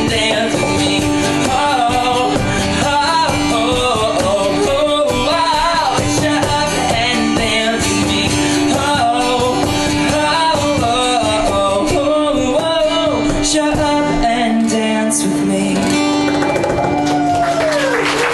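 A male voice singing with a strummed acoustic guitar in a live performance, a sustained low note underneath, ending on a long held vocal note that falls in pitch near the end.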